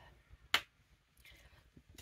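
A single sharp snap about a quarter of the way in, then a faint rustle.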